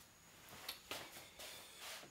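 Near silence with a few faint clicks and soft rustles of hands handling a metal reloading press.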